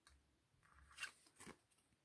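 Faint handling of tarot cards on a table: a soft rustle and two light clicks about a second and a second and a half in, otherwise near silence.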